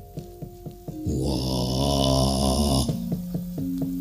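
Javanese gamelan accompaniment for wayang kulit: struck metallophone notes, about four a second, with steady ringing tones. From about a second in, a low, wavering voice is held for about two seconds and then stops abruptly.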